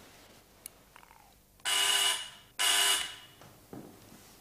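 Electric apartment doorbell buzzing twice, two rings of under a second each with a short gap between.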